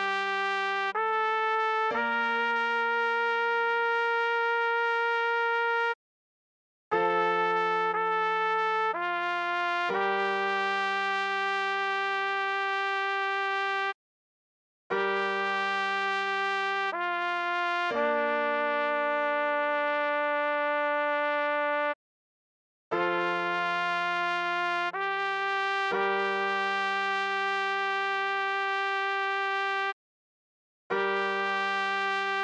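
Computer-rendered trumpet playing a slow melody at half speed over a held low accompaniment note. The notes are steady and without vibrato, in phrases of a few notes that each end on a long held note, with a gap of about a second between phrases.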